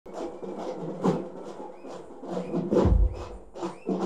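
Live drum troupe playing drums and metal percussion: a run of sharp, uneven strikes, the loudest with a deep boom about three seconds in.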